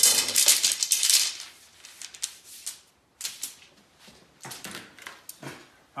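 Wooden arrow shafts clattering and rasping against each other as they are handled: a loud rattling clatter for about the first second, then a few shorter rustles and clicks.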